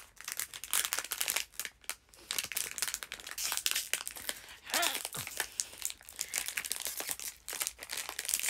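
Plastic wrapper of a chocolate package crinkling in many quick irregular crackles as it is handled and pulled at, not yet coming open. A brief vocal sound about five seconds in.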